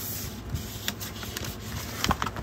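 Rustling of a scrapbook paper pad and its clear plastic sleeve being handled and slid across a desk, with a few light taps.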